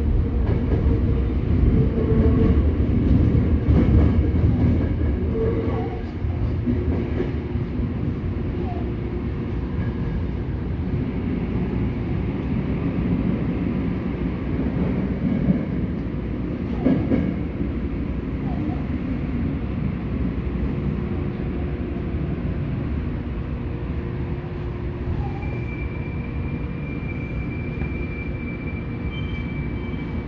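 Tokyo Metro Namboku Line subway train heard from inside the car as it pulls into the terminal platform: a steady low rumble, louder for the first six seconds or so, then a quieter steady hum with a faint high whine near the end.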